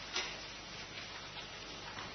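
Quiet room tone with a low steady hum, broken by a few light clicks, the clearest about a fifth of a second in.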